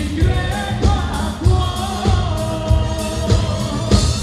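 Live band playing an Italian pop song: a steady kick-drum beat under electric guitars and keyboard, with a male lead voice holding long sung notes.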